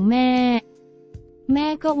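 Narrating voice speaking Thai, with one long drawn-out word at the start. After it comes a pause of about a second in which faint, steady background music sits under the voice.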